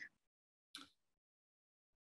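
Near silence, with one faint, brief sound about three quarters of a second in.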